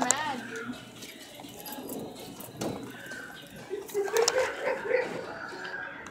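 Indistinct voices in a small room: a voice trailing off at the start, then a low background of voices, with a drawn-out voice again about four seconds in.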